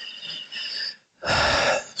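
A man breathing in audibly close to a microphone during a pause in his talk: a softer breath lasting about a second, then a louder, sharper intake of breath just before he speaks again.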